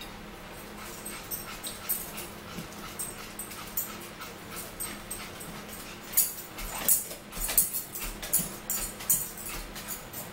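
A dog whimpering in short, repeated high whines. In the second half, sharp clicks and rustles come from eating close to the microphone.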